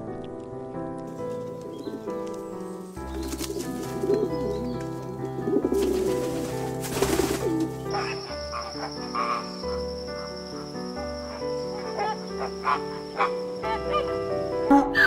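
Soft background music with sustained notes, and bird calls with a cooing quality mixed in over the middle of the stretch.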